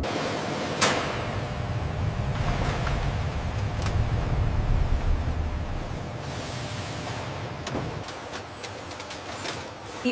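Busy warehouse ambience: a steady low rumble of machinery under a noisy hiss, with a few scattered sharp clacks, the loudest about a second in. It fades gradually over the last few seconds.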